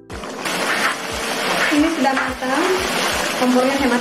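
Thick duck rendang sauce simmering in a pan at a full bubble: a steady bubbling hiss with irregular low pops of bursting bubbles.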